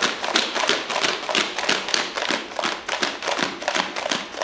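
Two plastic bottles of water with rocks, sand and dirt inside being shaken hard together, in a rapid, even rhythm of sloshing, knocking shakes as the rocks tumble against each other.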